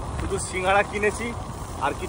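A man talking while riding a motorbike, with the steady low rumble of the engine and road underneath his voice.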